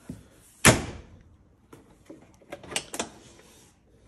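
A single sharp bang about two-thirds of a second in, followed by a few lighter clicks and knocks near the three-second mark.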